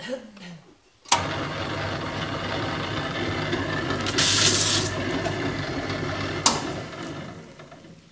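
Electric paper shredder switched on with a click, its motor running steadily. A sheet of paper goes through the cutters about three seconds in with a loud, brief tearing hiss. A second click comes near the end, and the motor then dies away.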